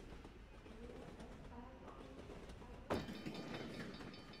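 Faint opening of a K-pop music video soundtrack: quiet low tones, then a sudden hit about three seconds in that rings on with several steady high tones, leading into the song.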